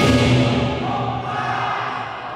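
Lion dance percussion of drum, cymbals and gong, its ringing dying away as the playing pauses, with a brief swell of voices about halfway through.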